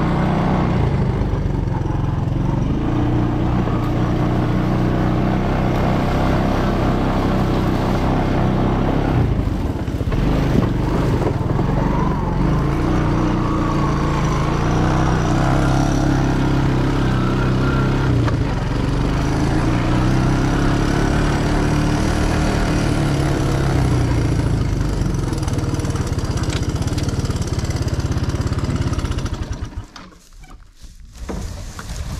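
Three-wheeler ATV's small engine running while being ridden, its pitch rising and falling with the throttle, then shut off right at the end.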